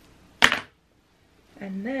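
A single sharp clack about half a second in: a hand-held comb set down on a hard surface.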